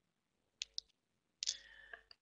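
Faint clicks of a computer mouse: two quick ones a little past half a second in, then a slightly louder one about a second and a half in.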